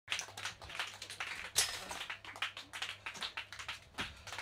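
Irregular clicks and knocks, the loudest about one and a half seconds in, over a steady low hum from stage amplifiers in a small live-music club between songs.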